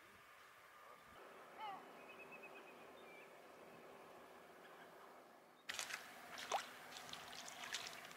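Faint shoreline ambience with a few brief bird chirps early on. About two-thirds through, small water splashes and trickling begin abruptly as gentle ripples lap at the muddy edge of a shallow lagoon.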